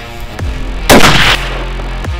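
A single rifle shot from a scoped hunting rifle about a second in, a sharp crack that fades over about half a second, over background music.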